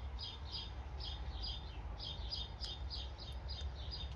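A small bird chirping in a quick, even series of short high notes, several a second, over a faint low rumble.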